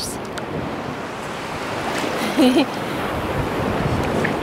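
Small sea waves washing and lapping around the camera at the waterline, a steady wash of water.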